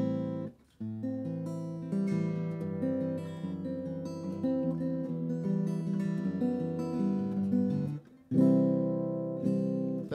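Acoustic guitar strummed in chords. There is a short break just after the first chord and another brief pause about two seconds before the end, followed by a last ringing chord.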